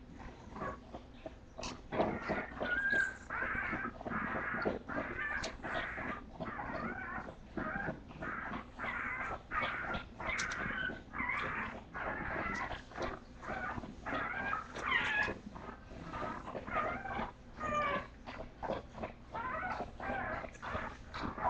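Bulldog puppies crying in a steady string of short, high calls, about one or two a second, louder from about two seconds in.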